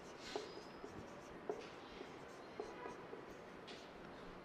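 Marker pen writing on a whiteboard: a few faint strokes and taps of the tip against the board.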